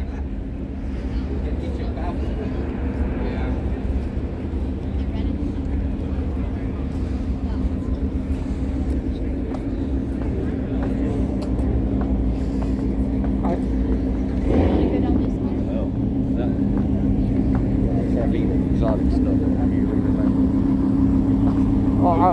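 A steady engine hum, a vehicle idling at a constant pitch, growing louder over the second half, with crowd chatter around it.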